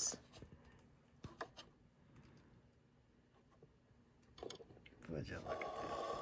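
Faint clicks and handling of thread and small metal and plastic parts while the looper of a Janome coverstitch machine is threaded by hand, with a soft continuous sound near the end.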